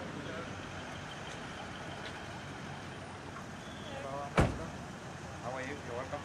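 An SUV's car door shuts with one sharp thud about four seconds in, over a steady background of vehicle engine noise.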